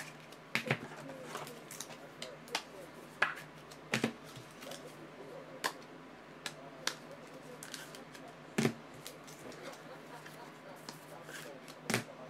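Irregular light clicks and taps, about a dozen scattered through, the sharpest about four seconds in and near nine seconds, over a steady low hum.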